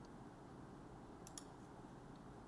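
Near silence: quiet room tone, with a faint double click of a computer mouse about two-thirds of the way in.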